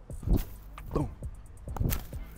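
Dull thuds of sneakers landing on artificial turf during repeated squat jumps, two about a second and a half apart, over background music.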